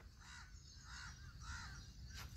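Faint cawing of a crow: three short calls in quick succession.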